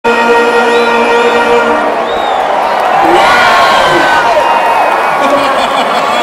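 A held final chord of music ends about two seconds in, then a large crowd cheers and whoops.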